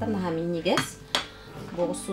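Glass canning jars clinking twice, about half a second apart, as they are handled on a table, with a woman speaking briefly before and after.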